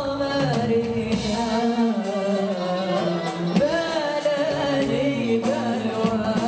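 A woman singing an Arabic tarab song live with her band accompanying, her voice bending and ornamenting each held note over light percussion ticks.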